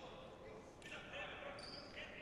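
Faint sounds of futsal play on a sports-hall floor: a single ball kick a little under a second in, a brief high squeak of shoes on the wooden floor, and players' distant calls.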